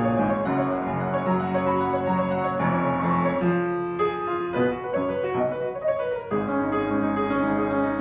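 Rameau 114 upright piano being played: sustained chords, a lighter passage of shorter notes in the middle, then a new full chord with bass struck about six seconds in.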